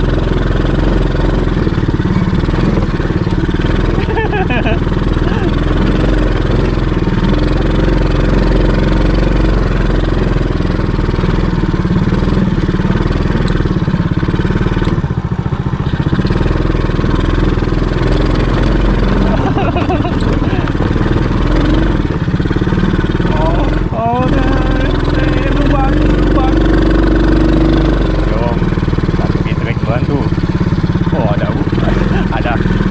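ATV engine running steadily under way, its pitch shifting briefly a few times as the throttle changes.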